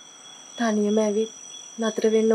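Crickets chirping in a steady, high, unbroken trill in the background, with two short voiced sounds from a person over them, about half a second in and near the end.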